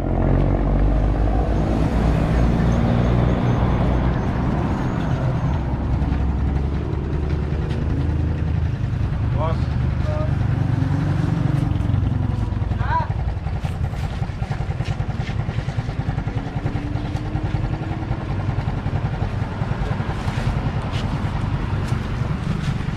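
A motor vehicle engine runs steadily nearby, a continuous low hum, with faint indistinct voices over it.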